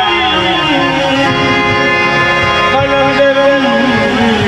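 Live qawwali music through a loudspeaker system: long held harmonium notes with a singer's voice gliding between pitches beneath them.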